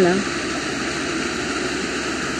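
Shallow stream running over stones, a steady, even rush of water.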